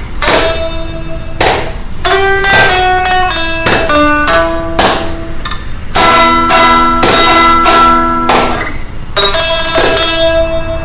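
Guitar playing a blues lead: picked single notes and chords with sharp plucked attacks, notes ringing on between them.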